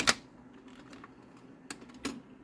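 Magnavox record changer mechanism cycling, with the tone arm swinging out to the record: a sharp mechanical click at the very start and a lighter click near the end, over a steady low hum.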